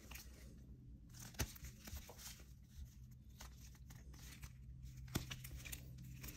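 Faint rustling and crinkling of plastic card sleeves and rigid plastic top loaders as a stack of sports cards is handled and flipped through, with a couple of sharp clicks of plastic, about a second and a half in and near the end.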